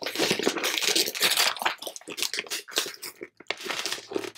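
Gift-wrapping paper crinkling and tearing as it is pulled off a wrapped book by hand, busy at first and growing sparser after about two and a half seconds.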